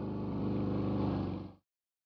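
Motor scooter engine running as the rider pulls away, with a steady low pulsing note. It cuts off abruptly about one and a half seconds in.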